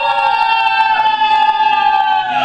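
A group of young women singing one long held note together, the end of a song, with an acoustic guitar strummed along.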